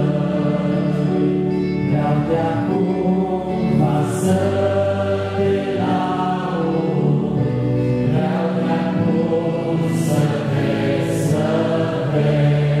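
Two men singing a slow hymn together in Romanian, their voices amplified through handheld microphones, with long held notes.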